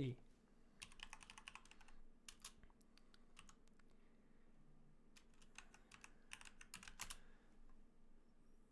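Faint computer-keyboard typing in three short runs of keystrokes as a search term is entered.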